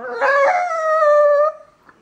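A brown-and-white terrier puppy gives one long whining howl that holds its pitch for about a second and a half, sags slightly, then stops. It is a distress cry from a puppy pining for its absent owner.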